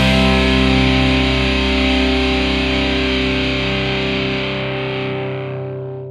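Final chord of a hard-rock song: distorted electric guitar holding one chord and ringing out, slowly fading, with the high end dying away near the end.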